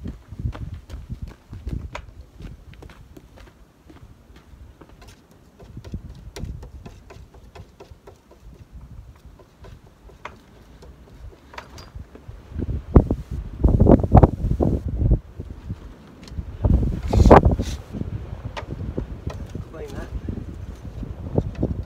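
Strong gusty wind buffeting the microphone, with low rumbling gusts that swell loudly twice in the second half, and scattered light clicks and taps throughout.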